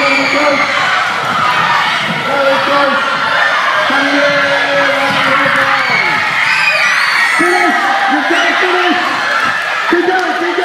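Many schoolchildren shouting and cheering at once in a sports hall, their voices overlapping with no break.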